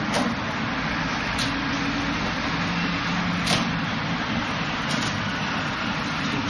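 Hands and forearms knocking against the wooden arms of a Wing Chun wooden dummy: four sharp, irregularly spaced knocks, the loudest about three and a half seconds in, over a steady background hiss.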